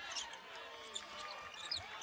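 Basketball being dribbled on a hardwood court, with a few short high squeaks of sneakers over the arena's crowd murmur.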